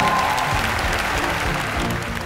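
Applause, a steady patter of hand clapping, over the show's background music.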